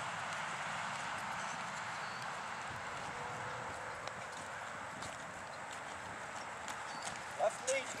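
Hoofbeats of a ridden horse moving over the soft sand footing of a riding arena, under a steady background noise. A man's voice comes in briefly near the end.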